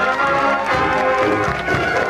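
High school marching band playing a march, with brass carrying the melody over low repeating bass notes.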